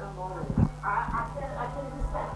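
Voices from a film soundtrack played over a room's loudspeakers, with a couple of low thuds about half a second in and again near the end, over a steady electrical hum.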